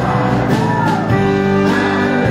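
Live country band playing with a male lead vocal, over electric bass, drums and pedal steel guitar.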